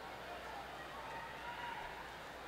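Reverberant indoor pool hall ambience: a low, steady murmur of crowd and faint distant voices.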